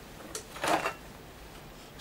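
A small knock, then a brief rustle of a paper service sheet being handled and set aside, followed by quiet.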